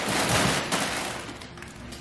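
Plastic packaging crinkling and rustling as bags are shoved onto a cabinet shelf: a dense crackle, loudest in the first second and fading over the second half.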